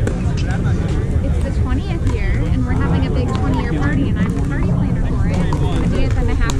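Wind buffeting the microphone with a steady low rumble, over background chatter of players and sharp pops of pickleball paddles striking the ball.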